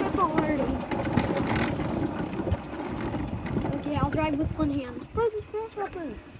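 Golf cart rolling over a gravel drive: tyres crunching on loose stones with a steady rattle from the cart. Short wordless vocal sounds rise and fall over it, strongest near the start and again in the last two seconds.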